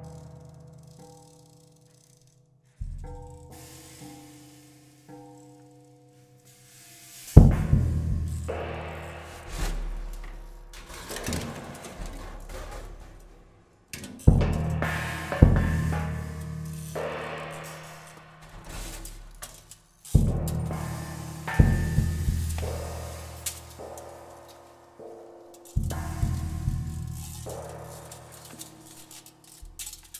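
Prepared drum kit played with extended techniques: separate struck hits, each leaving low, humming pitched tones that slowly die away. The hits come in clusters a few seconds apart, the loudest about seven seconds in.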